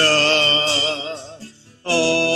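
A man singing a worship song, holding a long note that wavers in pitch and fades out about a second and a half in. After a brief pause the next held note begins just before the end.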